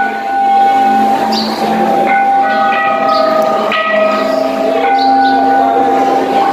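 Bells ringing: a series of struck notes at different pitches, each ringing on for several seconds so that they overlap.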